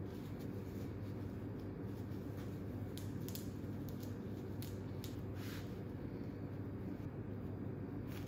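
Soft, faint crackle of fresh shiso leaves being stacked and rolled by hand on a wooden cutting board, a few light rustles in the middle, over a steady low room hum.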